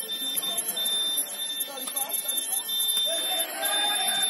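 A steady high-pitched electronic alarm tone sounding continuously over the noise of a basketball game, with voices and sharp knocks of play.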